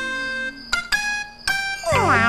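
Background score: a plucked string instrument plays a few separate notes that ring and fade. Just before the end, a swooping, gliding sound begins.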